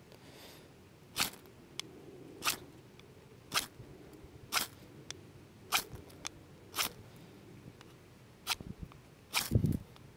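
Ferrocerium rod struck with the spine of a knife, throwing sparks into tinder: a series of short, sharp scrapes about one a second, closer together near the end.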